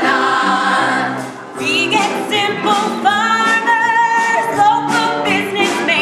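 A stage-musical cast singing together, several voices holding long notes with vibrato, phrase after phrase.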